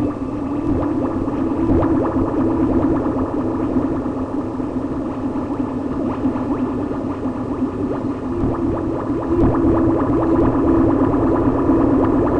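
Amplified tree branch played as an instrument through a guitar effects pedal, giving a dense, crackling, gurgling texture over a steady low drone, a little louder in the second half.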